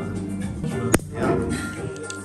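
A bottle of sparkling wine popped open at the table: one sharp pop about a second in, with background music underneath.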